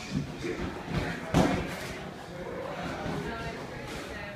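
A boxing glove landing a punch during sparring: one sharp thud about a second and a half in.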